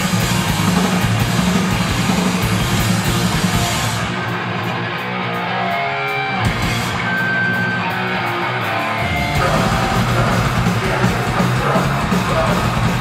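Heavy live band playing: guitars, bass and drums at full volume. About four seconds in the drums and cymbals drop out and a guitar is left holding ringing notes, then the full band comes back in about nine seconds in.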